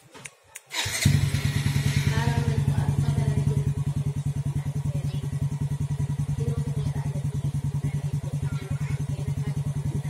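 Yamaha Vega Force i motorcycle's single-cylinder engine started remotely by its alarm system: a few short clicks, then the engine catches about a second in and idles steadily through an aftermarket EXOS exhaust pipe, settling slightly quieter after a few seconds.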